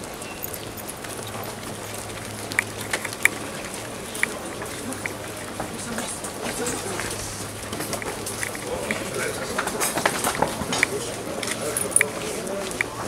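Footsteps of a group of men in dress shoes walking on a paved street, with indistinct voices around them and scattered sharp clicks, more of them in the second half.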